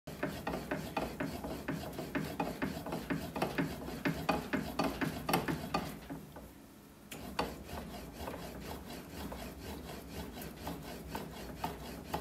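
Hand-cranked bat rolling machine pressing a Louisville Slugger Meta fastpitch softball bat's barrel between its rollers, making a rapid series of short scraping clicks about three a second. The strokes halt briefly around the middle and resume fainter. This is the heat-rolling break-in of the bat under progressive roller pressure.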